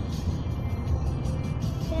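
Steady low road and engine rumble inside a moving Honda car's cabin, with music playing over it.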